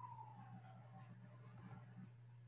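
Near silence: faint room tone with a steady low hum, and a faint tone that slides slowly down in pitch during the first second.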